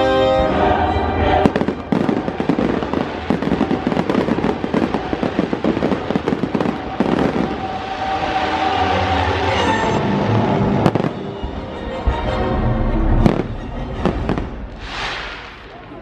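Aerial fireworks display: dense rapid crackling and popping from the bursting shells, broken by several sharp single bangs. Show music plays underneath.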